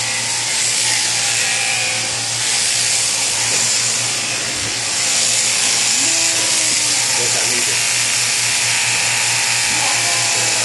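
Electric sheep-shearing handpiece running steadily as it clips through fleece: a constant motor hum under a bright, even hiss.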